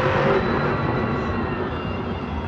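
Arena audio from a monster truck freestyle video: music over a steady low rumble from the Grave Digger monster truck's engine.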